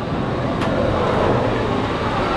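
Steady mechanical rumble inside a Disney Skyliner gondola cabin as it gets under way, with one click about half a second in.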